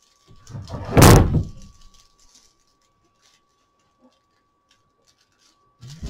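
Handling noise from the broom and its cord being worked in the lap: one loud rustle with a low thump that swells and fades about a second in. After it there is near quiet with a faint steady high tone.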